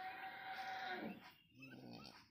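A faint, drawn-out animal call held on one pitch for about a second, followed by a weaker, shorter sound near the end.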